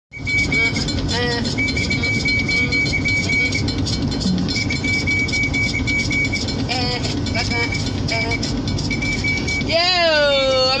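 Low, steady rumble of a car cabin, with a high electronic beep repeating in long runs of short pulses. A few brief voice sounds come through, and near the end a woman starts singing in long, gliding notes.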